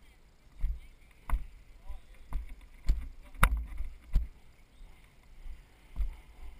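Footsteps walking down a dirt and rock slope, a dull thud roughly every two-thirds of a second as each step jolts the worn camera.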